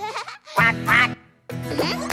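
Two short, quack-like cartoon voice calls about half a second apart, the second sliding up in pitch, set in a pause of children's song music that starts again near the end.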